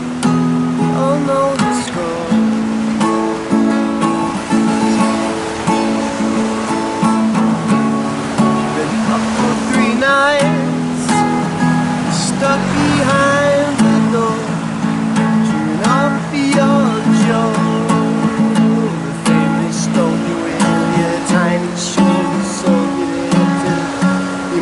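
Acoustic guitar strummed steadily in a run of chords, an instrumental passage of a song.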